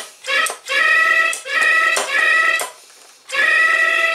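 Talking elephant cookie jar's sound chip playing its recorded phrase through a small tinny speaker, set off by lifting the jar's lid: the alarm that tells someone is getting into the jar. It comes in several short steady-pitched bursts, with a pause about three seconds in before a final burst.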